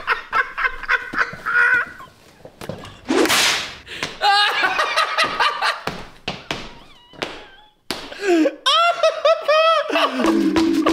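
Two men laughing hard: wheezing, breathy bursts and high-pitched squealing laughs, broken by many sharp slaps and knocks.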